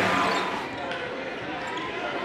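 Gymnasium basketball-game noise: a crowd of voices talking and calling out, with a basketball being dribbled on the hardwood court. The noise is louder in the first half second, then eases.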